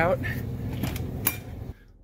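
Steady outdoor background hum with a sharp click about a second and a quarter in and a fainter one before it. The sound drops off abruptly near the end.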